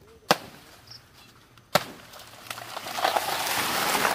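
Two sharp chopping blows into a banana plant's soft trunk, about a second and a half apart, then a rising rush of tearing stem and leaves as the cut plant falls, loudest near the end.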